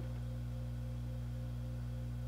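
A steady low hum made of several held tones, unchanging in pitch and level throughout.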